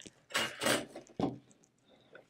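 Handling noise on a crafting table: a brief rubbing, sliding scrape, then a sharp tap just over a second in, as leather, contact paper and a brayer are moved on a plastic cutting mat.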